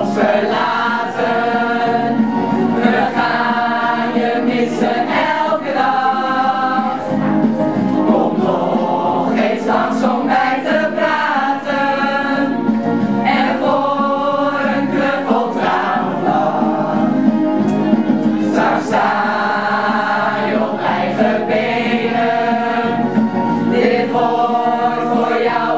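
An amateur choir of mostly women singing a song together, holding long sung notes.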